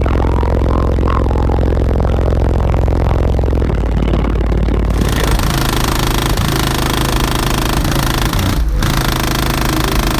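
A pair of PSI Platform 5 subwoofers in a car, in a box tuned to 26 Hz, playing very deep bass-heavy music. About five seconds in, the higher parts of the song come in on top of the bass.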